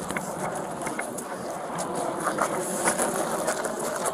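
Steady outdoor noise with faint rustling and a few light knocks: the handling noise of a body-worn camera as its wearer moves while hauling on a rope.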